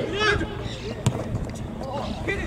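A football struck hard by a player's boot: one sharp thud about a second in. A man's shout comes at the start, with distant voices behind.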